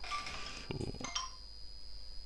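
A pause in speech: low background hum and a faint, steady high-pitched whine, with one brief soft sound a little under a second in.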